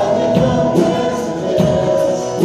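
Live church worship band: several voices singing together over electric and acoustic guitars, keyboard and drums, with a steady beat.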